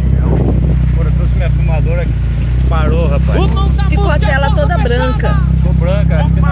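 Dune buggy's engine running with a steady low sound as the buggy drives along, with voices talking over it.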